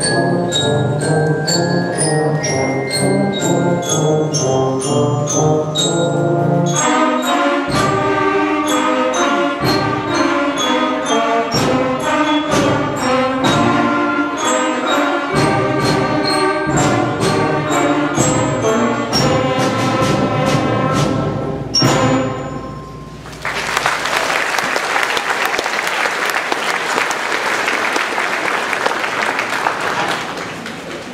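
Student concert band of brass, woodwinds and percussion playing a piece with frequent sharp percussion strokes, ending about 22 seconds in. Audience applause follows.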